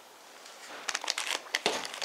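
Plastic parts bags crinkling as the wrapped parts are handled, in a quick run of short crackles that starts about a second in.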